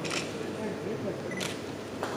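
Camera shutters clicking twice, once right at the start and once about one and a half seconds in, over the low talk of people gathered close by.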